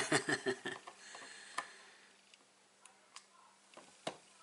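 A woman's laughter trailing off in the first moment, then a few light clicks and taps as the clear plate of a Stamparatus stamp positioner is handled and lifted.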